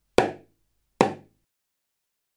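Small drum (bębenek) struck twice with a beater, the strokes about 0.8 s apart, each a sharp hit that dies away quickly.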